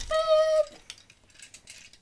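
A single steady, beep-like tone lasting about half a second at the start, then faint clicks.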